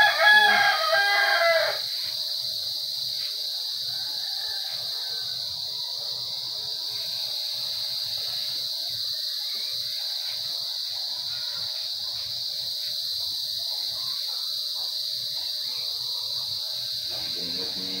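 A rooster crows once at the very start, the loudest sound here, over a steady high-pitched insect drone that runs throughout.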